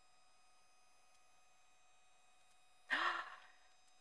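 Near silence, then about three seconds in a short breathy sigh from a woman at the microphone, lasting about half a second.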